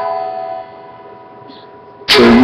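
An electric guitar chord ringing on after a strum, its held notes fading away about half a second in and lingering faintly.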